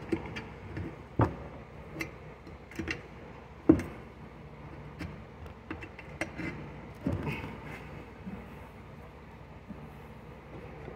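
Irregular clicks and knocks of a screwdriver prying a small mower tire's bead over its rim, with the wheel clamped in a table vise. The sharpest knocks come about a second in and again near the four-second mark.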